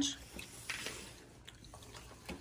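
Faint wet mouth clicks and smacks of a child biting and chewing pizza close to the microphone.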